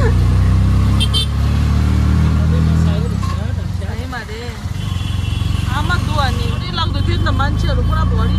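Auto-rickshaw engine running as it drives in traffic, heard from inside the open cabin as a steady low drone that eases off briefly a few seconds in.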